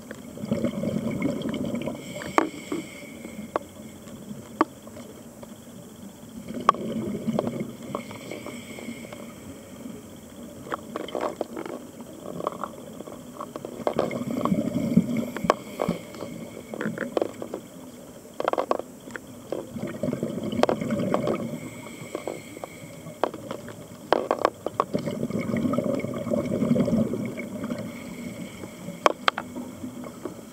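Underwater sound of a scuba diver's regulator: bubbles from breathing out come in a burst about every six seconds, five times, with sharp clicks scattered in between.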